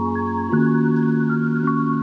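Background music: a soft electronic track with bell-like struck melody notes over held chords, the chord changing about half a second in.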